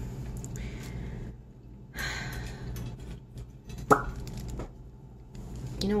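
Soft, intermittent rustling of tissue paper as it is smoothed and folded by hand, with a single short tap just before four seconds in.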